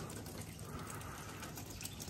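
Wet falling snow landing on an umbrella overhead and on the ground: a faint, steady hiss with fine ticks.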